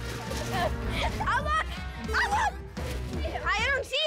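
Children's voices shouting and laughing over background music.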